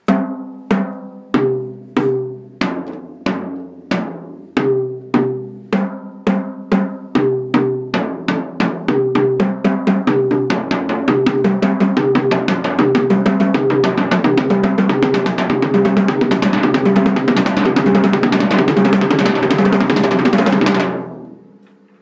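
Acoustic drum kit played with sticks: a fill going snare, rack tom, floor tom, rack tom, snare with single-stroke sticking (RL RL RLR LR LRL). It starts slow as separate hits and speeds up steadily into a fast continuous roll, then stops about a second before the end.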